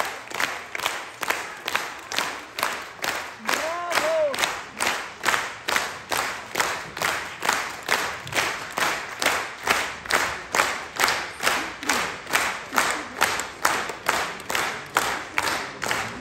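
Concert audience clapping in unison, a steady rhythmic applause of about two to three claps a second, with a brief shout about four seconds in.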